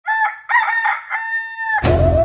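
A rooster crowing, a cock-a-doodle-doo in three parts with the last note held long, used as an intro sound effect. Near the end a deep bass hit cuts in as intro music starts.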